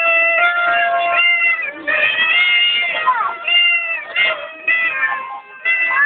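Children's high voices in long, drawn-out notes, several held for about a second each with short breaks between them.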